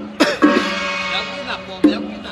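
Chinese ritual percussion: a few sharp strikes at uneven spacing, each leaving a ringing tone that dies away.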